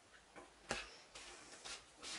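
A few soft, short clicks at irregular intervals, the loudest about two-thirds of a second in.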